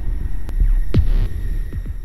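Logo intro sting: deep throbbing bass pulses with a few sharp hits and a whoosh that falls steeply in pitch about a second in, dying away at the end.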